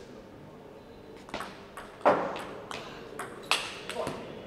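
Table tennis rally: the celluloid-type ball clicking off the paddles and bouncing on the table, a quick run of sharp ticks starting about a second in, with the loudest hits about midway and near the end.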